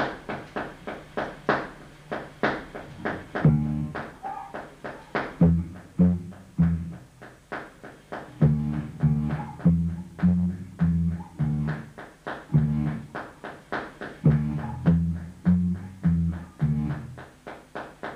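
Electric bass guitar played in short, repeated low notes in uneven groups, the player's count of 5 alternating with 9, over a steady run of sharp clicks; the bass notes come in about three and a half seconds in.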